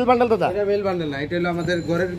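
Speech only: a person talking in Bengali without a break.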